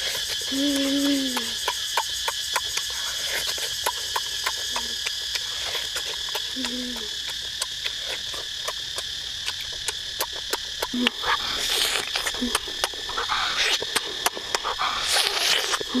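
A person making short closed-mouth 'mmm' sounds of enjoyment, five of them, each falling in pitch at the end. Underneath runs a steady high insect chirr with many small clicks and crackles, and louder rustling bursts near the end.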